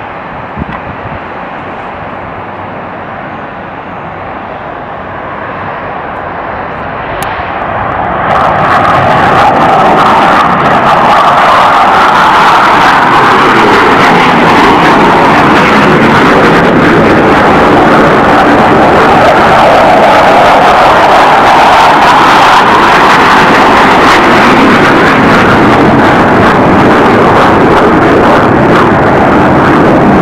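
F/A-18C Hornet's twin GE F404 turbofan engines at takeoff power during the takeoff roll and liftoff. The jet noise builds over the first several seconds, then holds loud and steady.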